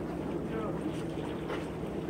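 A steady low engine drone holding one even pitch, with faint distant voices over it.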